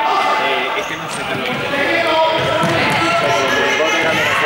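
Several students' voices talking and calling over one another, echoing in a large sports hall, with a ball bouncing on the court floor.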